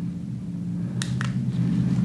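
Two quick clicks from a headlamp's push-button switch about a second in, over a steady low hum.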